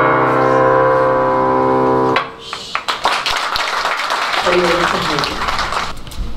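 A piano-style keyboard holds a final chord that is cut off about two seconds in. Applause follows, dense clapping with a few voices in it, and it begins to fade near the end.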